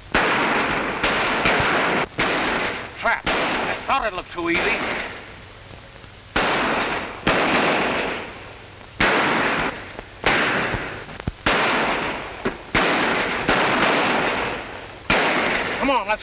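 Gunfire in a shootout: shot after shot, roughly one every half second to second, each dying away in a long echo. Shouting voices come in among the shots around four seconds in and again at the end.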